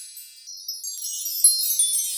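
Magic-sparkle chime effect: a shimmering run of high tinkling chimes that starts about half a second in and gets louder about a second and a half in.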